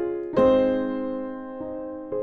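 Piano-voiced keyboard chords struck and left to ring out, one strong chord about half a second in and a softer change near the end, played to work out the song's four-chord progression.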